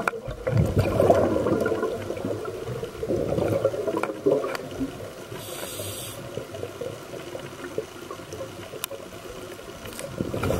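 Bubbling and gurgling water heard underwater, loudest in the first second and again about three to four seconds in, with a brief hiss near six seconds and quieter bubbling after.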